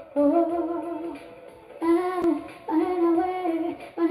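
A woman singing three held, sliding phrases with music underneath.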